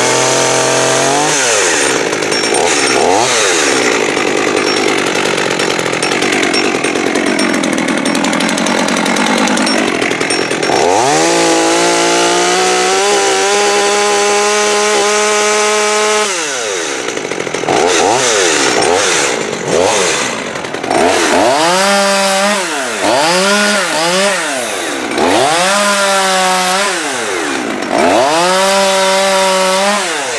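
Small two-stroke top-handle chainsaw, a Holzfforma G111 (a Chinese clone of the Stihl MS200T), being revved: one rev up and down at the start, a long steady run at high speed in the middle, then a string of quick blips up and down through the last dozen seconds. Its carburettor has been tuned, with the idle set too low.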